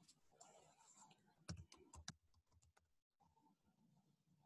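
Faint computer keyboard typing: a quick run of keystrokes in the middle, after a light hiss.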